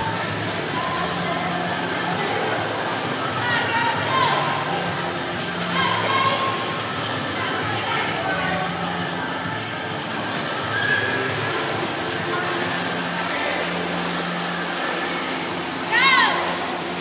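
Indoor swimming pool din: swimmers splashing, with indistinct echoing voices and music with a steady bass line playing over it.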